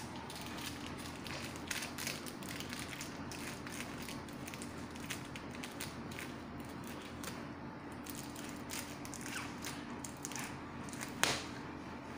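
Faint rustling and small taps of hands working a small packet into the fold of a fabric sofa cushion, over a faint steady low hum, with one sharper knock near the end.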